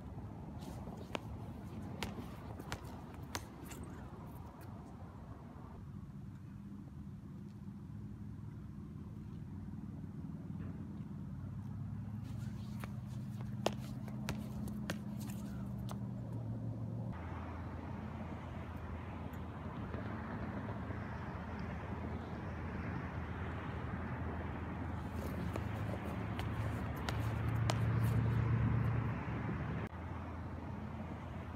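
Low, steady motor hum, most likely a vehicle engine, building slowly to its loudest a couple of seconds before the end and then dropping off, with a few faint sharp clicks in the first few seconds.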